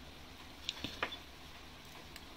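A few faint light clicks of a metal spoon against a glass yogurt jar, three in quick succession about two-thirds of a second to a second in, one with a brief glassy ring.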